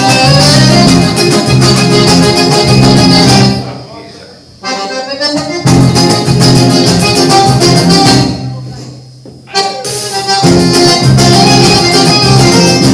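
Live instrumental southern Brazilian regional music led by accordion, with acoustic guitar, pandeiro and bass. The band breaks off twice, about four and nine seconds in, for about a second each time, then comes back in full.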